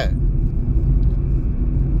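Steady low rumble of a car on the road, heard from inside the cabin.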